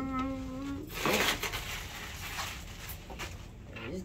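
A held sung "ta-da" note that ends under a second in, then rustling of tissue paper and light handling of a cardboard gift box, loudest about a second in.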